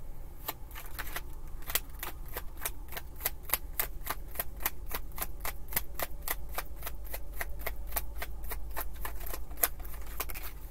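A deck of tarot cards shuffled by hand, the cards clicking against each other in quick, even succession, about four or five a second, starting about half a second in and stopping near the end.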